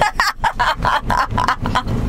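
A woman laughing hard in a quick run of short pulses, about five a second.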